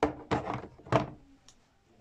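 Hard plastic tackle boxes knocking and clacking together as one is fitted into the other: three sharp knocks, at the start, about a third of a second in and about a second in, then a fainter click.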